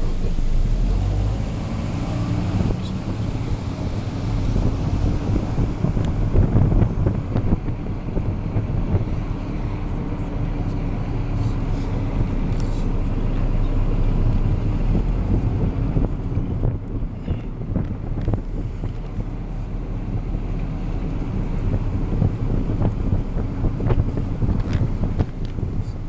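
Outdoor wind buffeting the microphone, a low rumble that rises and falls, with faint indistinct voices under it.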